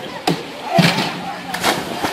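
A person jumping off a springboard into a swimming pool, landing with a splash near the end, with shouting voices before it.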